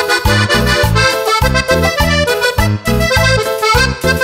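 Instrumental cumbia passage: a piano accordion plays the lead melody over a steady, bouncing bass line of about three low notes a second.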